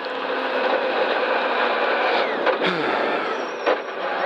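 Rally car's engine and road noise heard from inside the stripped cabin as it drives on, its engine note falling about two and a half seconds in, with a couple of clicks and a thin high whine near the end. The crew suspect a slipping clutch or a broken drive shaft.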